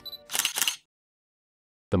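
Camera sound effect: a short high focus beep, then a quick mechanical shutter click-and-whirr, followed by about a second of silence.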